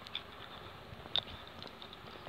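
Footsteps on a muddy, leaf-strewn dirt track, with a few sharp clicks, the loudest about a second in.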